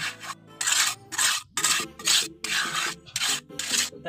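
Steel trowel scraping and smoothing wet cement mortar in a wooden mould, a series of short strokes about two a second, as the top of a concrete interlock tile is levelled off.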